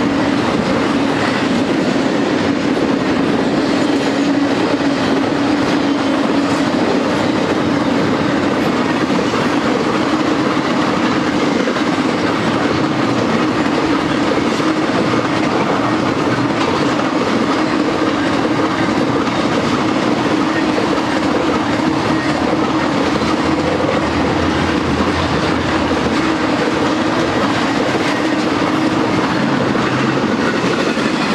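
BNSF intermodal freight train's container and trailer cars rolling past close by: a loud, steady, unbroken noise of steel wheels on rail with a constant low hum.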